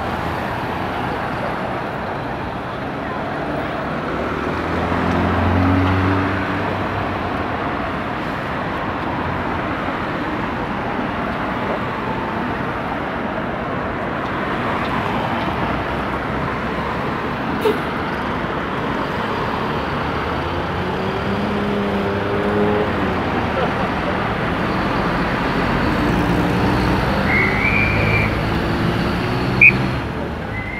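Steady road traffic, cars passing, with an engine hum swelling about five seconds in and again past twenty seconds. There is a single sharp click past halfway and a brief high squeak near the end.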